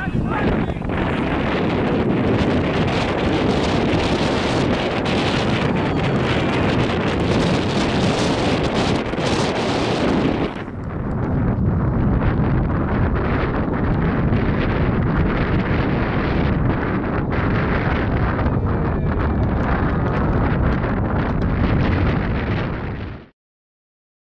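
Wind buffeting the camera microphone, a loud, steady rumble with the ambience of the open field under it. About ten and a half seconds in the sound cuts to another stretch of the same wind noise, and it stops dead shortly before the end.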